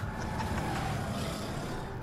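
A racing car's engine running, a steady noisy rumble heard on its own without music or speech.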